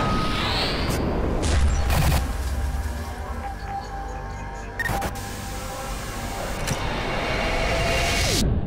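Broadcaster's logo sting: a cinematic music and sound-effect bed with a low rumble throughout and sharp booming hits about two seconds in and again near the middle.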